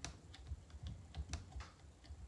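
Faint, irregular little clicks and ticks from fingers and fingernails handling a small clear decor stamp, about half a dozen in two seconds.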